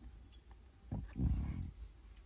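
A person stifling a laugh: one brief, low, muffled sound about a second in, otherwise quiet.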